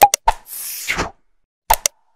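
Sound effects of a YouTube subscribe-button animation. A sharp mouse-click pop opens it, followed by a second click, then a whoosh of about half a second. Two more quick clicks come near the end.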